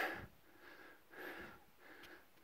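A hiker's faint, quick breathing: soft puffs of air in and out, winded from a steep rock climb.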